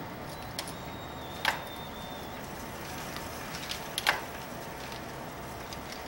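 Two sharp clicks, about two and a half seconds apart, the second louder, over a steady low background hiss as a wooden coil-winding jig and cordless drill are handled.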